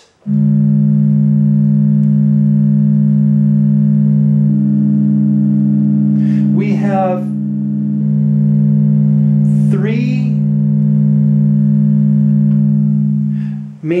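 Hackme Rockit synthesizer oscillators holding a steady electronic drone of several pitched tones. A higher tone joins for a few seconds in the middle, and the drone cuts off near the end.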